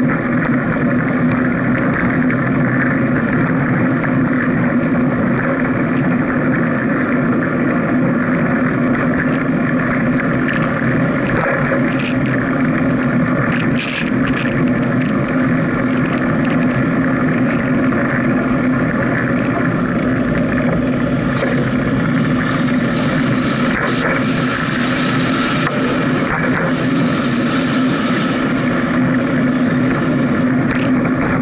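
Steady running noise of a moving vehicle, with a constant low hum and wind on the microphone. The hiss grows stronger about two-thirds of the way through.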